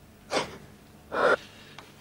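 A young woman sobbing: two short, gasping breaths about a second apart.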